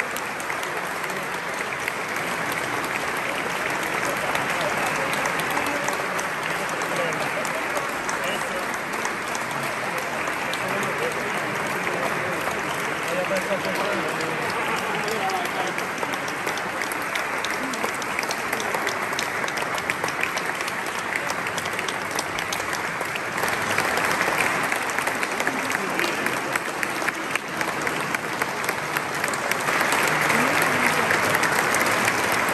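Audience applause: many hands clapping steadily, swelling louder about three-quarters of the way through, with voices talking underneath.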